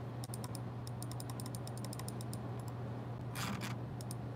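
Typing on a computer keyboard: a quick run of light key clicks through the first two-thirds, over a steady low electrical hum, with a short rush of noise near the end.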